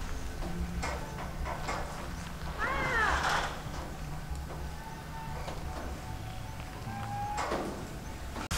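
A single short animal call, rising then falling in pitch, about three seconds in, over a low steady background.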